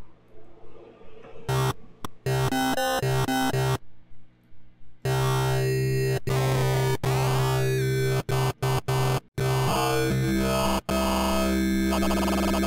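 Dirty electronic synth bass from the Wobbler layer of the Bass Machine 2.5 Ableton rack. It plays short stabbed notes for about two seconds, then after a short gap a held, buzzy bass line with a sweeping tone, cut by a few brief dropouts.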